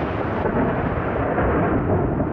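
A loud, steady rumble of noise with no tone in it, like rolling thunder.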